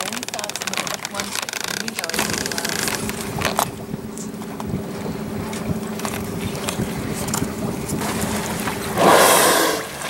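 A whale's blow: a loud rush of breath from the blowhole, about a second long, near the end. Under it, a boat's motor hums steadily.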